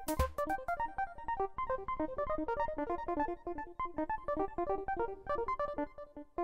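A modular synthesizer sequence: a fast run of short, plucky pitched notes, several a second, passed through an After Later Audio Cumulus (Clouds-clone) granular processor that adds reverb. A last low drum hit sounds at the very start.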